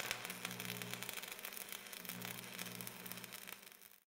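Crackling static with a steady low hum, fading out near the end.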